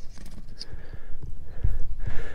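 Handling noise as the camera is taken loose from its mount and lifted: scattered light knocks and rubbing on the microphone, with a heavy low thump near the end.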